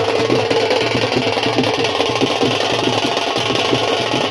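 Procession wind pipes playing a sustained, buzzing, reedy tune, with only light drumming underneath.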